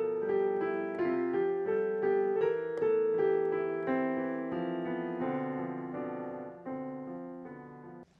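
Digital piano played by hand: slow held chords, the notes changing about every half second, growing steadily quieter toward the end.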